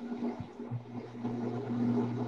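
Steady low hum over faint hiss, heard through a video call's open microphone. The hum grows stronger about three-quarters of a second in.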